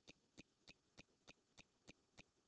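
Near silence with faint, evenly spaced clicks, about three a second.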